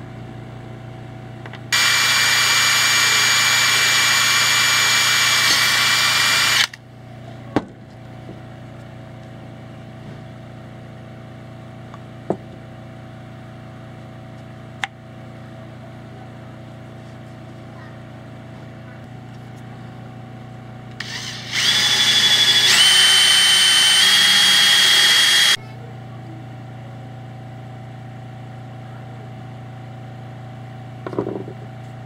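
Cordless drill running in two bursts of about five and four seconds, boring a hole in a propeller hub; the second burst steps up in pitch twice. A few light clicks between the bursts over a steady low hum.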